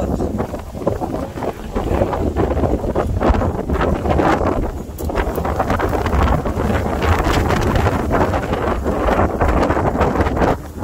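Strong monsoon storm wind blowing hard across a phone's microphone, a loud low buffeting rumble that rises and falls with the gusts.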